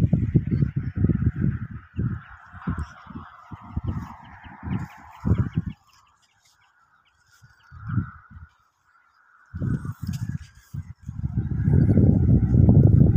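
Wind buffeting a phone microphone in uneven gusts, dropping away for a few seconds about halfway through, with a steady chorus of birds calling in the background.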